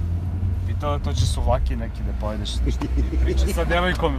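Steady low drone of a moving Renault car, heard from inside the cabin, with people talking over it.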